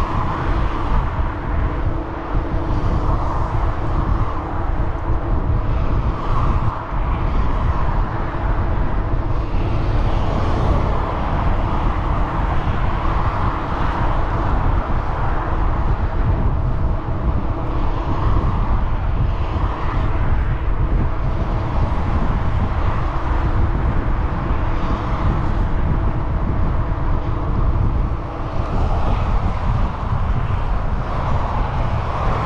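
Steady wind rumbling on the microphone of a camera riding along on a moving bicycle, over a continuous rush of freeway traffic just beyond the fence.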